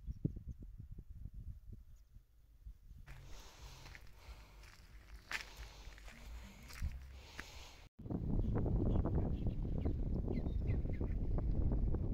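Footsteps in flip-flops on a dry dirt and gravel path, crunching and slapping. About eight seconds in the sound cuts abruptly to a louder, steady low rumble of wind buffeting the microphone.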